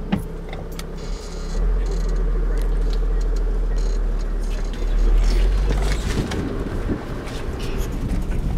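Safari minibus pulling away and driving, heard from inside the cabin: a low engine and road rumble that grows about a second and a half in and is loudest around five seconds.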